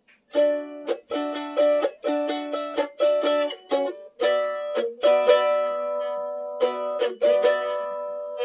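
F-style mandolin strumming a chord progression in D, played up the neck: a run of quick strums, a change to a lower-rooted chord about halfway through, one chord left ringing for a moment, then more strums near the end.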